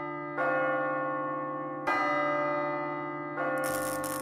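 A deep bell struck three times, about a second and a half apart, each stroke ringing on and slowly fading. A hiss of static comes in with the last stroke.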